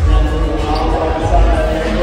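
Skateboard riding the contest ramps: wheels rolling, with several low thumps from the board on the ramps.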